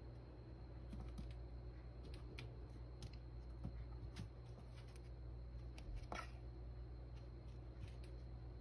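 A kitten's paws and claws scrabbling on a tile floor and in cat litter: faint, scattered light clicks and scratches, with a louder scrape about six seconds in.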